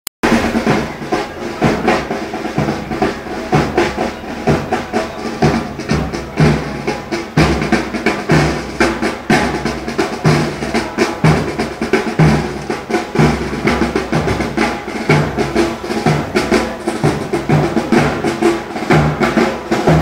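Marching band drums: snare drum rolls over a steady bass drum march beat.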